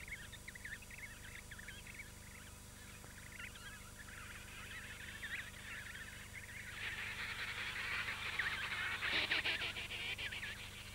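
An emperor penguin colony calling: many overlapping high, warbling calls that build up and grow louder through the second half.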